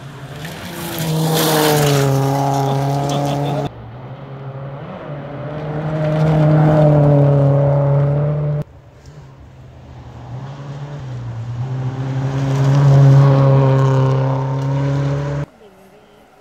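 Volvo 240 rally cars at full throttle, three passing one after another: each engine note swells as the car nears and then cuts off suddenly.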